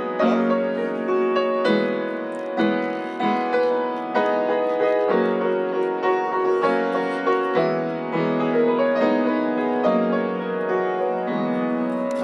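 Upright piano played by hand: slow chords, struck about once a second and left to ring into each other.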